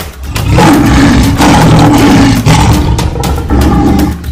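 A loud, drawn-out roar lasting about three seconds, over intro music with a steady beat.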